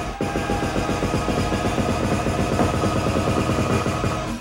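Live Brazilian baile funk-style electronic dance music over a PA. The steady kick beat drops out and a fast, stuttering roll of rapid drum hits fills the bar.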